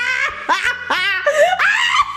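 High-pitched laughter in quick repeated syllables, about three a second.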